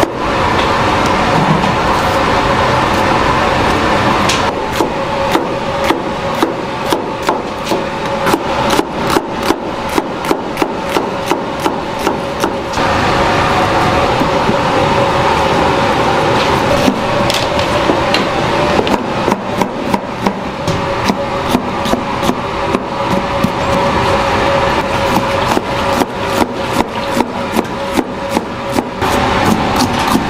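Chef's knife chopping bell peppers on a plastic cutting board: quick, even blade strikes against the board, several a second, in two long runs with a pause of a few seconds between them.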